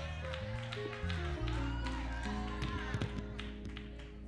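Live band music under a pause in preaching: held chords over a bass line that steps from note to note, with a few short taps.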